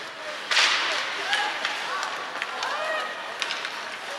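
Ice hockey rink sounds: a sudden loud burst of noise about half a second in, several sharp clicks on the ice, and indistinct voices calling out.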